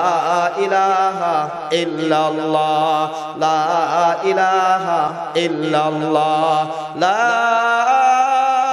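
A man's voice chanting zikr through stage microphones in long, drawn-out melodic phrases with echo, rising to a higher held note near the end.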